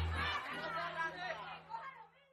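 The last held note of a llanera song dies away in the first half-second, leaving voices chattering as the recording fades out.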